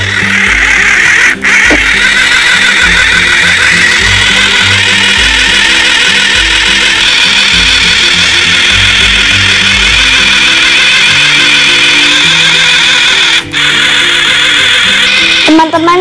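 Toy mini blender's small motor whirring steadily as it blends mango and yogurt together, dipping briefly twice. Background music plays under it.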